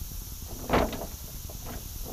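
Wind rumbling on the microphone, and a little under a second in a brief louder swish as the nylon cast net and its lead line are handled.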